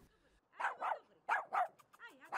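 A dog barking: several short, fairly faint barks in quick succession, some in pairs.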